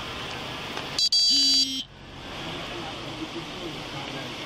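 A short electronic beep, under a second long, about a second in, with a brief break just after it starts, over a steady outdoor background hiss.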